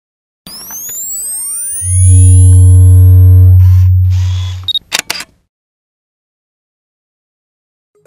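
Synthesized logo-intro sound effect: rising sweeps, then a loud deep bass drone that fades out, ending in a sharp double click of a camera shutter.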